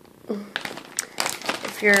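Plastic snack bags of cotton candy crinkling as they are handled and turned over, in irregular crackles starting about a quarter second in.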